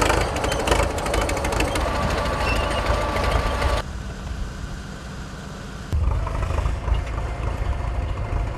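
A crawler bulldozer's diesel engine running with dense, rapid clanking for about four seconds. Then, after a sudden change, a quieter steady hiss over a low engine drone, from the fire engine and its hose jet. The low rumble grows louder again near the end.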